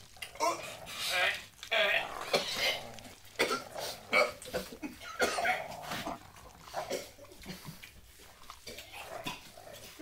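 Men's non-speech vocal noises while eating: coughing and gagging sounds mixed with laughter, in quick irregular bursts that thin out over the last few seconds.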